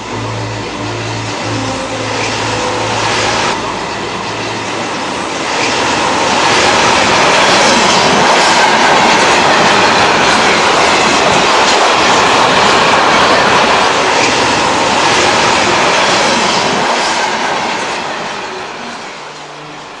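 Electric ÖBB train passing close at speed: a rushing rumble with wheel clatter that builds from about five seconds in, stays loud through the middle and fades away near the end.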